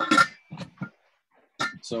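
Mostly speech: voices at the start, a short silent gap in the middle, then a man saying "so" near the end.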